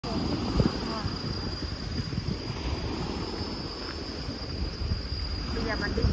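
Insects in the trees droning as a steady high-pitched tone, over a low, uneven rumble of wind on the microphone.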